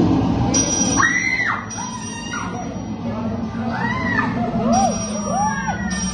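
Busy arcade hall din: steady background noise with voices and music, and several short rising-and-falling tones, one about a second in, another about four seconds in, and two lower ones near the five-second mark.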